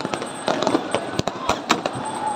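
Fireworks going off: a rapid, irregular run of sharp bangs and pops, several a second, the loudest a little past the middle.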